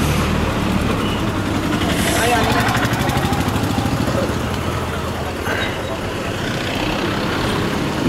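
Busy town-street traffic: a motor vehicle engine running close by with a fast, even rattle, over a steady hum of traffic and scattered voices of passersby.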